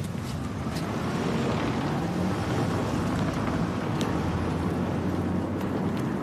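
Outdoor street background: a steady low rumble of traffic, with a faint click about four seconds in.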